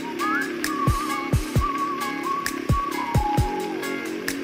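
Background music: a high, whistle-like melody with a wavering pitch over a steady drum beat.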